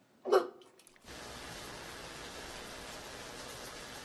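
A woman's single short, loud retch over a toilet bowl, followed from about a second in by a steady hiss with a faint low hum.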